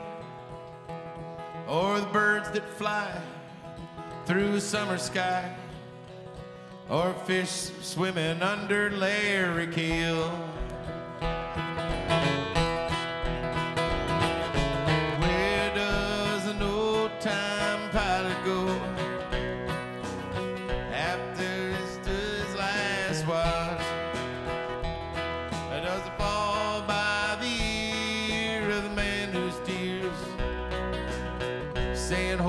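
A live country-rock band plays an instrumental passage: an acoustic guitar strums while an electric lead guitar plays bending notes. About ten seconds in, a steady bass-and-drum beat comes in.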